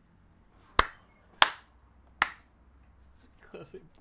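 Three sharp hand claps, unevenly spaced over about a second and a half, followed near the end by a faint bit of voice.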